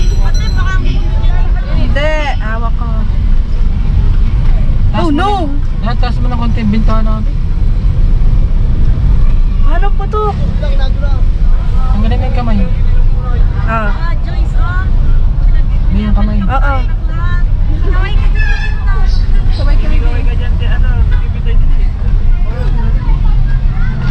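Steady low rumble of a moving car, engine and road noise heard from inside the cabin, with short high-pitched voice sounds coming and going over it.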